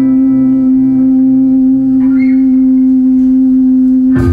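A single held note from a live band's instrument, steady in pitch, with a lower tone pulsing about twice a second beneath it and fading away.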